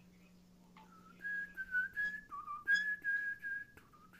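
A person whistling a short tune of held notes that step up and down, starting about a second in, over a faint steady low hum.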